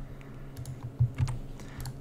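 A few short clicks at the computer, about a second in and again near the end, over a steady low electrical hum.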